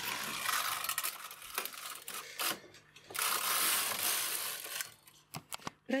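Rustling handling noise with a few sharp light clicks at a knitting machine, as the knitted fabric hanging from the metal needle bed is handled; the rustling grows louder for a second or two around the middle.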